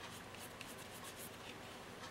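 Pencil drawing on thin cardboard: several short, faint scratchy strokes.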